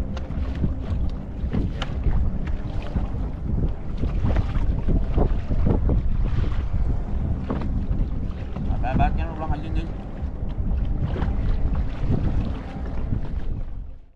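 Wind buffeting the microphone in a small open wooden boat on choppy water, a steady low rumble with occasional knocks and water splashing against the hull. It fades out at the very end.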